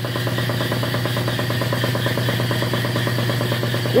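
Borg Warner Velvet Drive 71C-series marine transmission spinning on a test stand, the drive running steadily with an even, rapid mechanical pulse over a low hum.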